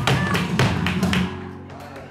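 Flamenco alegría: sharp palmas hand claps and the dancer's footwork strikes over a flamenco guitar. The quick strikes thin out about a second and a half in, leaving the guitar notes ringing.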